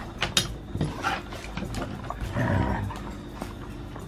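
Two Siberian huskies playing on an elevated mesh pet cot: sharp clicks and scrapes of paws and claws on the cot and deck, then a short, rough growl about two and a half seconds in.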